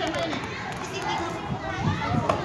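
Children's voices talking and calling out at play, a mix of overlapping chatter.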